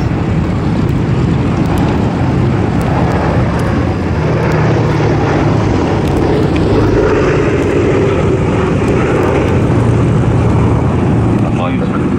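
A B-17 Flying Fortress with four Wright R-1820 Cyclone radial engines drones steadily in a low pass. It grows louder through the middle as it flies over and stays loud to the end.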